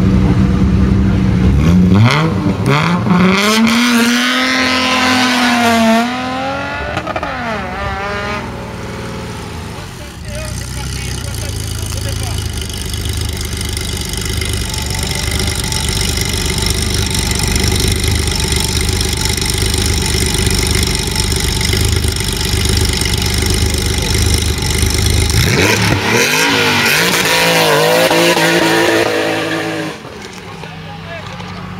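Competition cars pulling away from a hillclimb start line. First an engine revs and accelerates away, its pitch rising, in the first few seconds, then fades. A Porsche 911's flat-six then idles steadily for about fifteen seconds, and near the end revs hard and accelerates away through rising revs.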